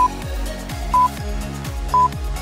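Short, high electronic beeps once a second, the last seconds of an exercise countdown timer, over background electronic music with a steady beat.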